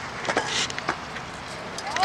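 Kick scooter's wheels rolling on a concrete path as a child pushes it along: a steady rolling noise with a few sharp clicks.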